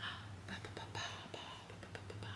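Faint, irregular rustling of a thick, fluffy hand-knitted sweater as the pieces are handled, with a steady low hum underneath.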